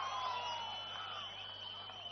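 Faint echo of the amplified voice from the loudspeaker system, dying away slowly, with a thin steady high ringing tone held under it.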